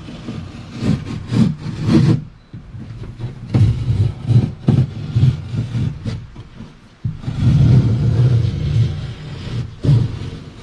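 Fiberglass cloth being cut with a knife at a wooden kayak's cockpit opening, and the cut piece being pulled free, crinkling and rubbing against the deck in irregular bursts.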